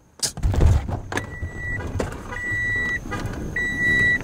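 A car's warning chime, the kind that sounds with a door open, beeping three times, each beep about half a second long and roughly once a second. A sharp knock comes just after the start, and the beeps sit over rustling and knocks as someone climbs out of the car.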